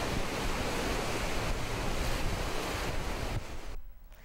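Whitewater river rapids rushing, a steady, loud wash of turbulent water that cuts off abruptly just before the end.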